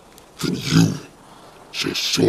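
Growling, roaring vocalisation, in two loud bursts: one about half a second in, lasting about half a second, and another starting near the end.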